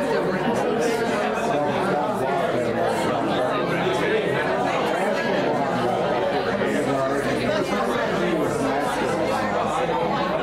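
Many people talking at once in a church sanctuary: a steady hubbub of overlapping conversations with no single voice standing out.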